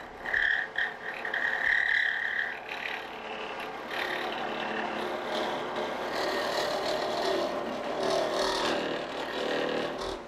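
Wood lathe running while a curved-shaft hollowing tool cuts inside a spinning wooden ball, taking light finishing passes to smooth the inner wall. A steady high whine of the cut holds for the first couple of seconds, then gives way to a steady scraping hiss.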